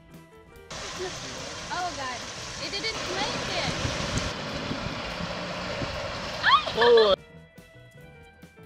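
Steady rush of water pouring over a low curved concrete dam spillway, with people's voices over it and a loud exclamation near the end. The rush starts suddenly about a second in and cuts off abruptly, with quiet background music before and after.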